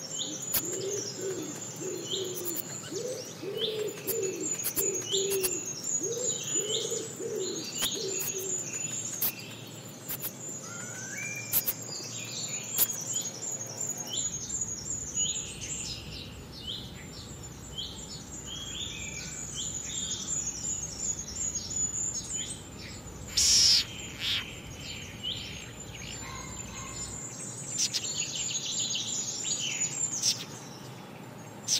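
Many small birds chirping in short, sharp notes throughout, with a series of lower calls in the first eight seconds and one brief louder call a little past the middle.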